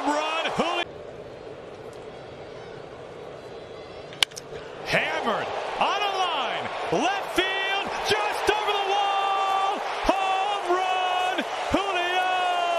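Low ballpark crowd murmur, then one sharp crack of a wooden bat hitting a pitched baseball about four seconds in. Loud raised voices follow it.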